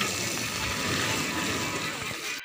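Water from a hose spraying steadily onto smouldering ash and embers of a burnt hut, a continuous rushing noise.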